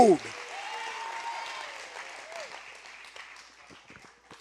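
Audience applauding after a line of the sermon, the applause fading away over about three seconds, with a faint voice calling out about a second in.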